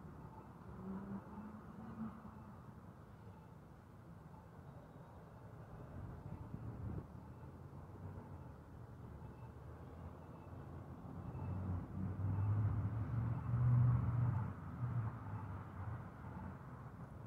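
A car driving slowly along a street: a low engine and road rumble that grows louder about three-quarters of the way through.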